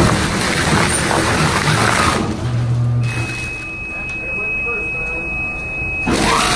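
A dual-shaft shredder chews through perforated sandpaper roll trim with a dense grinding and tearing. A little past two seconds in the tearing eases off. From about three seconds a steady high-pitched beep sounds over the quieter machine.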